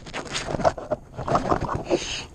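Irregular knocks, rubbing and clatter of handling close to the camera on a kayak while a small fish is being reeled in and landed.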